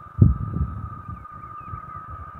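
Wind buffeting the microphone outdoors, with a sudden low gust about a quarter second in that settles into a steady rumble. A steady high-pitched whine runs underneath.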